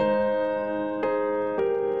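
Background keyboard music: held piano-like notes, with a new chord struck about every half second to a second, three times.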